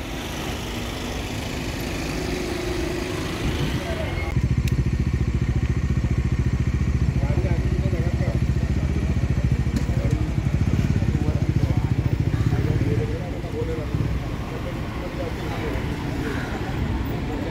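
Street noise, then from about four seconds in a low engine idling close by, with a rapid, even pulse, until it eases near the end; faint voices underneath.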